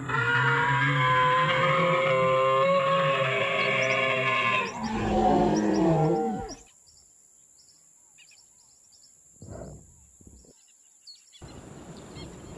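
A long dinosaur roar of the Tyrannosaurus rex kind, holding its pitch for several seconds and then falling away and stopping a little past halfway through.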